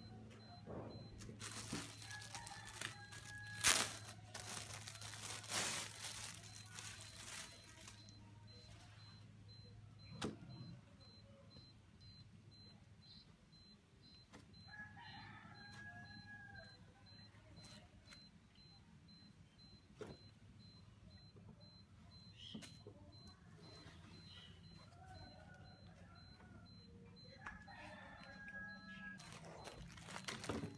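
Cloth and plastic packaging rustling as white bedding is unfolded and handled, busiest in the first several seconds with a sharp knock among it, then quieter handling. A steady low hum runs underneath, and faint drawn-out calls sound in the background about four times.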